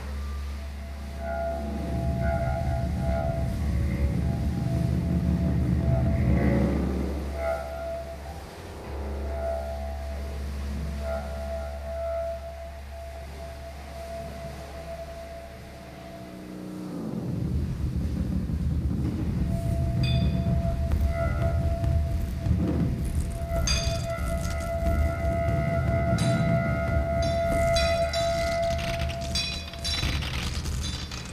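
Free-improvised ensemble music from bass clarinet, laptop electronics, amplified objects and drums. A steady low hum with sustained tones above it fills the first half and stops about 16 seconds in. A low rumble follows, with metallic clinks and ringing tones in the second half.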